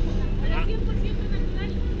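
A vehicle engine idling, a steady low rumble, with faint voices over it.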